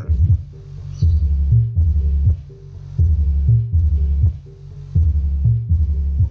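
Music played through a subwoofer with the vocals filtered out by a DIY subwoofer tone control. Only deep bass notes are left, throbbing in a steady repeating pattern.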